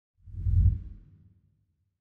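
A deep whoosh sound effect that swells about half a second in and dies away within a second.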